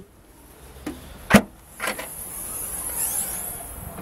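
Hatchback tailgate of a Vauxhall Corsa being opened: a sharp click of the boot release about a third of the way in, a softer knock half a second later, then a steady low rustling noise as the lid rises.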